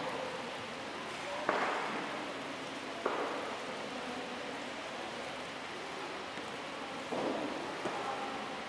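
Steady hissing background noise, with a sharp knock about a second and a half in, a second knock about three seconds in, and a short rustling burst near the end.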